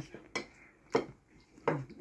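Ceramic plates knocking against each other and the table as they are moved around, three short sharp clinks spread across about two seconds.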